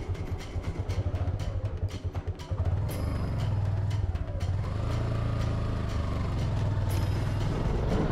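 A vehicle engine running as a low rumble, uneven for the first few seconds and then steady, with background music over it.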